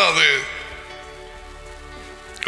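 A man's spoken phrase ending on a falling pitch, then a pause in which only faint, steady background music is heard.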